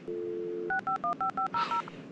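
A telephone dial tone for about half a second, then a quick run of about eight touch-tone keypad beeps.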